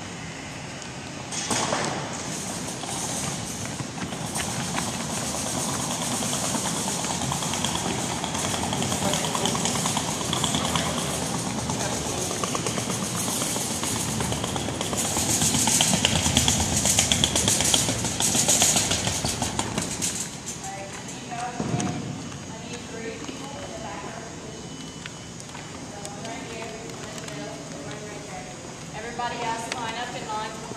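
A wire-frame ball cart loaded with volleyballs being wheeled across a wooden gym floor, rattling and clattering loudest about halfway through, over a background of people's voices. The noise drops off after about two-thirds of the way, leaving voices talking.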